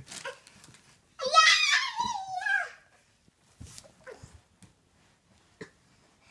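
A toddler's long, high-pitched wail that falls in pitch, followed by a few light knocks.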